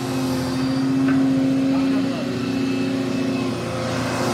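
Volvo excavator's diesel engine running steadily at work, a constant drone that eases slightly about halfway through.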